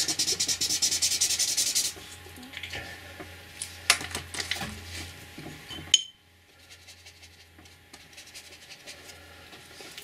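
Red felt-tip marker scribbled rapidly back and forth on paper for about two seconds, laying down ink for a wet brush to lift as watercolour. Then a few light taps and clicks, a short sharp click just before six seconds, and much quieter after it.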